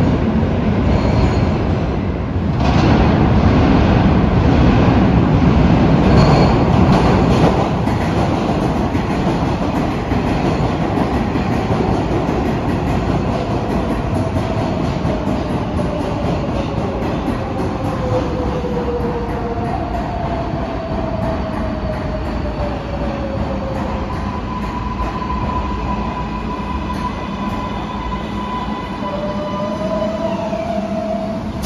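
Kawasaki R188 subway train running through the tunnel, wheels rumbling on the rails, loudest in the first several seconds. Later, motor whines fall in pitch twice as the train moves slowly, then a steady higher whine is held near the end.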